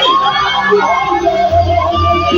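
Live gospel praise music over a loud PA. A single voice slides up and holds a long wavering note, and a deep bass comes in about one and a half seconds in.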